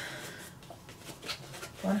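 Faint, irregular scratching and rustling of paper scratch-off lottery tickets being scratched and handled.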